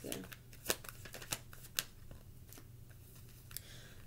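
Tarot cards being handled: a handful of short, sharp card snaps in the first two seconds and one faint one later, over a low steady room hum.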